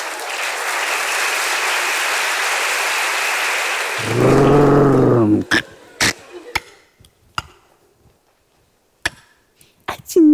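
Theatre audience applauding for about four seconds. The applause is cut off by a loud, low held note lasting about a second, followed by a handful of sharp, separate knocks.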